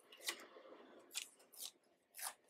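Faint snips of small scissors cutting paper: three short cuts.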